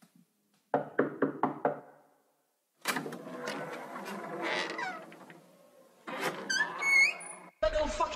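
Intro of a trap beat: five quick knocks about a second in, then sampled voices and a high rising cry. A deep 808 bass hit comes in just before the end.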